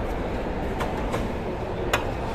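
Steady low rumble of dining-hall background noise with three sharp clinks of stainless steel tableware. The last and loudest clink comes near the end.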